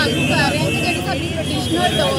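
A woman speaking into reporters' microphones, with street and vehicle noise behind her voice.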